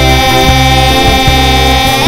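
Musical-theatre backing track with two young voices holding one long sung note; the pitch slides upward at the very end.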